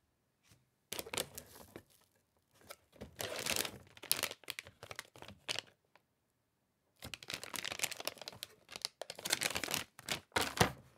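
Metallized anti-static bag crinkling as hands handle it and lift it out of a cardboard box, in bursts: about a second in, again from about three to six seconds, and through the last three seconds.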